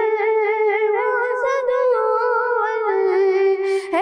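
A boy singing a kalam (Urdu devotional poem) unaccompanied. He holds one long, wavering note on "la" that steps down in pitch about three seconds in.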